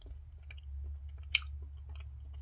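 A person chewing a chewy protein bar: small, soft mouth clicks, with one sharper click a little past halfway, over a low steady hum.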